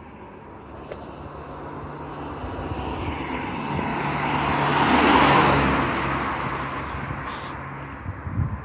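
A car driving past, its tyre and engine noise building, peaking about five seconds in, then fading away.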